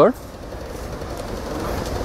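A steady low rumble of background noise that slowly grows a little louder.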